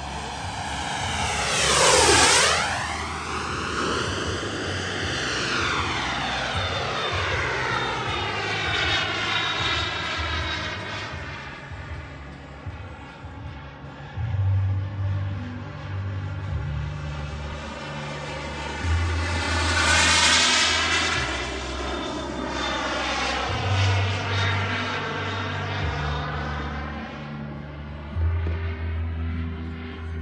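Twin JetCat turbine engines of a 1/6-scale radio-controlled MiG-29 jet making high-speed passes. Each pass is a whistling rush that swoops down in pitch as the jet goes by, loudest about two seconds in and again about twenty seconds in.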